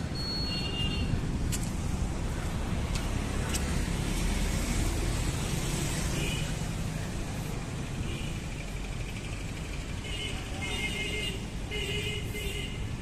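Steady road traffic noise, a continuous low rumble with hiss above it and no distinct events, with faint high calls or distant voices now and then.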